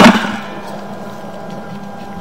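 A single sharp knock, then a steady hiss with a faint hum under it.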